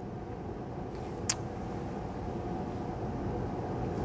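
Room tone: a steady low hum with one brief click a little over a second in.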